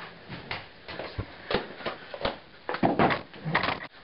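Irregular knocks and clatter from household objects being handled in a small room, growing busier and louder in the last second and a half.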